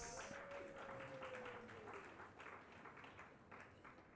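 Faint scattered audience clapping, thinning out and dying away over the few seconds.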